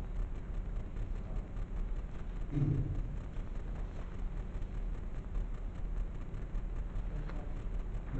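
Steady low rumble of room background noise, with a brief low murmur from a voice about two and a half seconds in.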